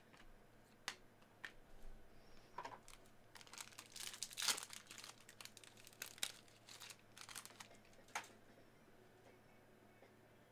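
Foil trading-card pack wrapper crinkling and tearing as it is opened, with cards being handled. Faint, irregular rustles and crackles, busiest and loudest around four to five seconds in.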